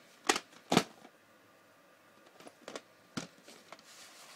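VHS tape cases being handled: two sharp plastic knocks in the first second, then a few lighter clicks and taps around three seconds in.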